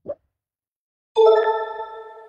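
A short rising plop, then about a second in a single ding: a chime with several ringing pitches that sets in sharply and fades away over about a second and a half.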